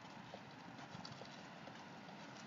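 Faint light taps of trainers on paving as the feet jump in and out in plank jacks, a few taps a second, over faint outdoor background noise.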